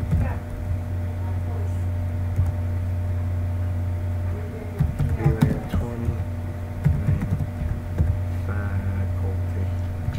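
Computer keyboard typing in short runs of keystrokes, over a steady low electrical hum. Faint voices talk briefly around the middle.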